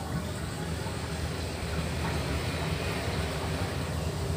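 Steady low rumble with a wash of running water from a hose flowing into a shallow fish pond.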